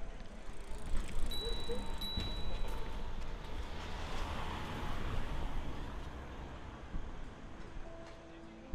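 Street sounds with something passing by, the noise swelling to a peak about halfway through and fading away. A short high bell-like ring sounds about a second and a half in, and again half a second later.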